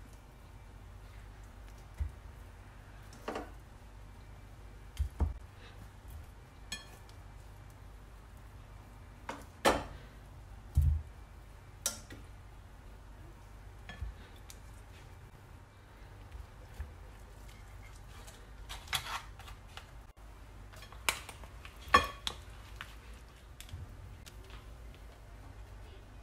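Kitchen tongs and food knocking and clicking against a glass serving bowl as boiled corn cobs and cooked lobsters are plated: about a dozen irregular knocks, the sharpest one near the end.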